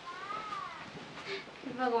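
A cat meowing once, faint, the call rising and then falling in pitch. A word of speech follows near the end.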